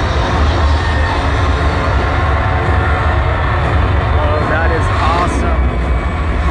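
Loud arena concert sound through the PA: a heavy, steady low rumble with a dense wash over it, and crowd voices shouting over the top about four to five seconds in.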